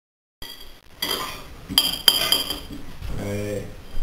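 Forks clinking and scraping on ceramic plates while eating, with two sharp ringing clinks about a second and a half and two seconds in. The sound cuts in suddenly after a moment of silence.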